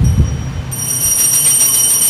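A low rumble, then bells start ringing about two-thirds of a second in, a bright high ringing that carries on steadily.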